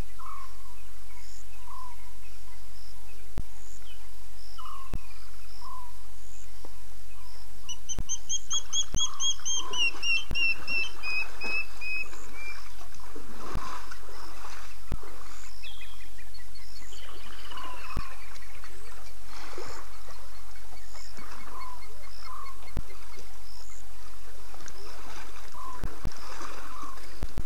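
Wild birds calling in the bush at dusk, including a long descending trill about eight seconds in and another falling call a little past the middle, over short chirps repeating every second or two.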